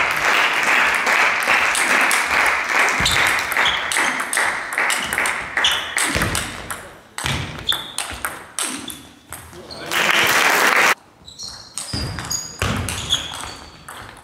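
Table tennis rally: the celluloid-type ball clicking back and forth off the bats and the table in quick sharp ticks. Crowd noise from spectators, applause and calls, fades over the first few seconds, and a loud burst of crowd noise near the end stops suddenly.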